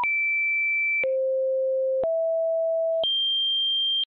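Computer-generated pure tones, one a second, each held steady at a different pitch: a high beep, then a low one, a slightly higher one, then the highest, with each change abrupt.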